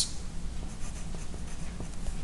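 Pencil writing on a sheet of paper on a tabletop: light, irregular scratching strokes.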